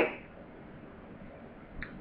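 A pause in speech with low, steady room hiss. The last spoken word fades out at the start, and a faint short sound comes near the end, just before talking resumes.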